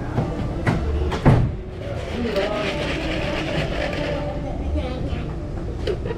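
Restaurant dining-room background: indistinct voices and a steady clatter. There are two sharp knocks in the first second and a half, the second one the loudest.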